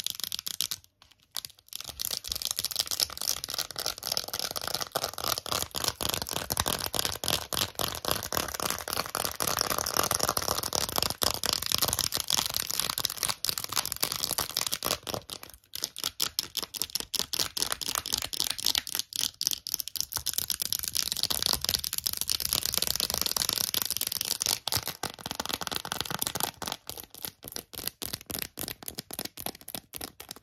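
Long false fingernails rapidly tapping and scratching on a glossy plastic phone case: a dense run of fast clicks and scrapes, broken by brief pauses about a second in and around the halfway mark.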